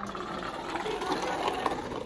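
A small toy car's wheels rolling down a wooden ramp, a steady whir, with classroom chatter behind it.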